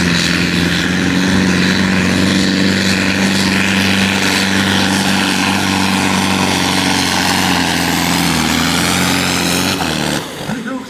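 Pulling tractor's diesel engine held at full throttle under heavy load as it drags the weight-transfer sled, a loud, steady drone that drops away at the very end as the pull finishes.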